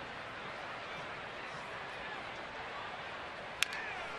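Steady murmur of a ballpark crowd, then near the end a single sharp crack of a wooden bat fouling a pitch straight back.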